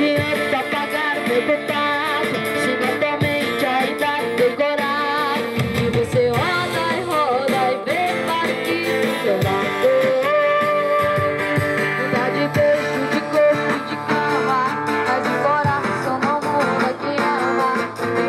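Two acoustic guitars strummed and played live with a boy singing into a microphone, amplified through the stage sound system.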